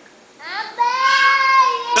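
A high-pitched voice that slides upward about half a second in, then holds one long sung note with a slight wobble until speech takes over.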